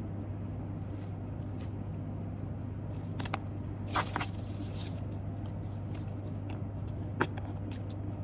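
Soft rustling and scraping of a fabric ribbon being pulled loose and a cardboard box lid being lifted, a few scattered short handling sounds, the most distinct a sharp scrape about four seconds in and a click near the end, over a steady low hum.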